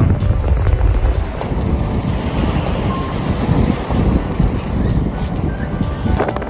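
Wind buffeting the microphone, a heavy low rumble, with waves washing on the shore and background music underneath.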